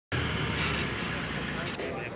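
Armoured vehicle's engine running as it drives along the road, a steady low rumble with people's voices mixed in; the sound changes abruptly near the end.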